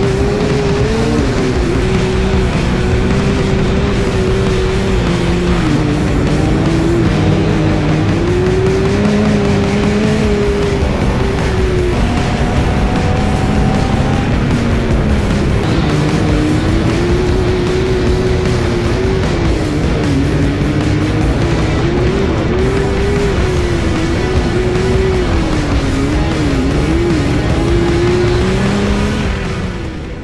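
Sandrail engine running hard, its pitch rising and falling as the throttle comes on and off, under background music.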